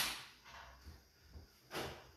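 A sharp metallic clank as the stainless steel pot is handled on the portable burner. It fades out over about half a second. Quiet handling noise follows, with a second, softer knock near the end.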